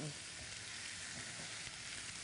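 Crumbled tofu and baby portobello mushrooms sizzling steadily in a hot stainless steel skillet.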